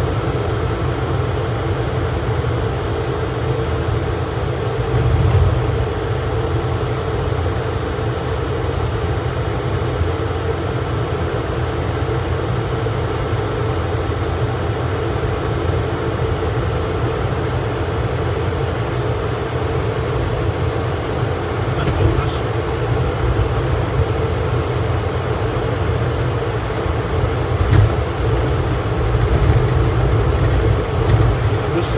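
Steady driving noise inside the cabin of an Opel Rocks-e small electric car: a constant low rumble of tyres and wind with a steady hum, swelling slightly twice.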